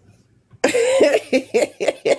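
A person bursting into hearty laughter about half a second in: a long rising-and-falling note, then a run of short pulses about four a second.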